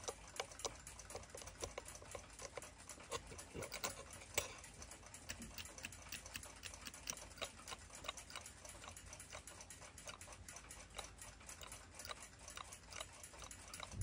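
Faint, irregular small metallic ticks and clicks, with a few louder taps around four seconds in.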